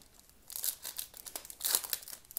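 Foil trading-card pack wrapper crinkling in the hand, a run of irregular crackles that begins about half a second in and is loudest near the end.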